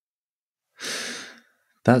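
A man's single audible breath into a close microphone, about half a second long, just before he starts to speak; the rest is dead silence.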